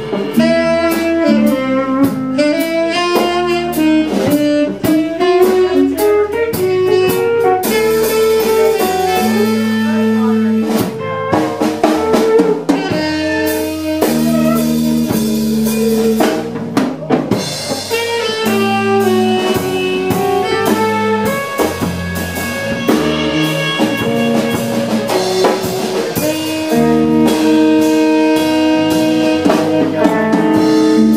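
Live jazz band: a saxophone plays a melody over a drum kit and an electric bass line.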